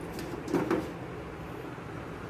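A brief handling sound about half a second in, as hands work at the air conditioner's casing, over a steady low hum.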